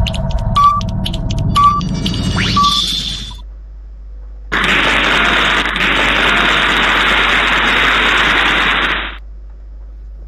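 Countdown-timer sound effect: ticking with a short beep about once a second, three times, ending in a rising glide. About a second later, a steady hiss-like sound effect runs for about four and a half seconds and cuts off suddenly.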